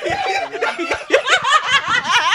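A small group of people laughing together, several voices of chuckles and giggles overlapping.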